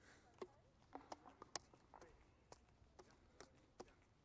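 Faint, irregular sharp pops of pickleball paddles hitting the ball on nearby courts, about ten in four seconds, some with a short ring.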